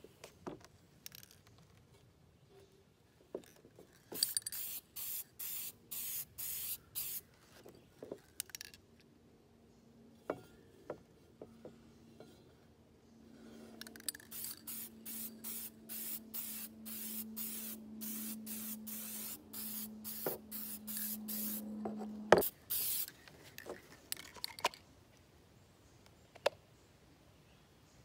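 Aerosol spray-paint can hissing in short bursts as translucent blue paint is sprayed onto a metal wheel rim: a run of bursts about four seconds in, then a longer, quicker run from about fourteen to twenty-two seconds. A faint low steady hum sits under the second run, and a sharp click just after it is the loudest sound.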